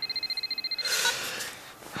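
A mobile phone ringing with a high, fast-trilling electronic ringtone that cuts off about a second in as the call is answered, followed by a brief burst of noise.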